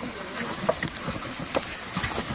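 Plastic game sled carrying a dead bear dragged through dry grass and brush: a steady scraping rustle, with a few sharp twig snaps and footsteps.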